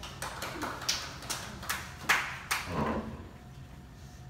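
Sparse applause from a small audience: a few people clapping unevenly for about three seconds, then stopping.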